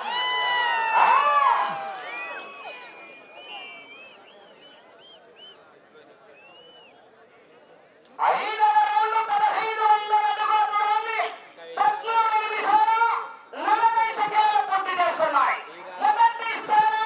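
Men shouting over one another for the first two seconds or so, fading to faint scattered calls; from about eight seconds in, a man's voice over a public-address loudspeaker in long phrases with short breaks.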